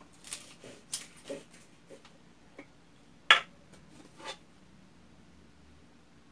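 Plastic cap being worked off an Elmer's Glue-All bottle and the bottle handled: a run of light clicks and knocks, the sharpest about three seconds in.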